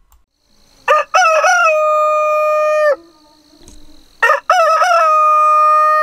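A rooster crowing twice. Each crow opens with a few short broken notes and ends in a long, level held note of about a second and a half.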